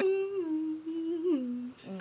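A woman humming one held note that steps down to a lower note about a second and a half in, then stops.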